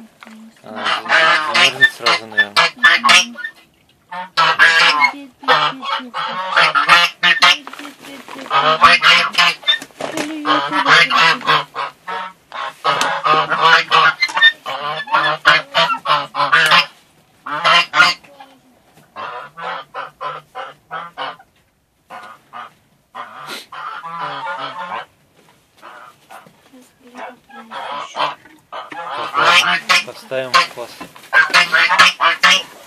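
Several white domestic geese honking loudly, calls coming in long runs of repeated honks, thinning to shorter, quieter calls about two-thirds of the way through before picking up again near the end.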